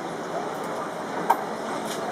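Background sound of a street-side café terrace: a steady murmur of distant voices and traffic, with one short sharp click a little past the middle.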